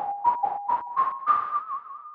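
A Moog Model 15 synthesizer playing its 'Bottle Blower' preset: a single whistle-like tone with a puff of breathy noise at the start of each note, about four notes a second, climbing gradually in pitch with a brief wobble near the end.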